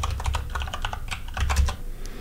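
Typing on a computer keyboard: a quick run of key clicks as a password is entered.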